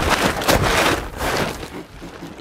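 Fire shelter being shaken open by hand, its fabric rustling and flapping, with sharp snaps at the start and about half a second in, easing off near the end.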